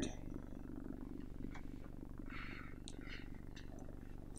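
A quiet pause between sentences with a steady low hum in the room, and a few faint, brief soft sounds about two to three seconds in.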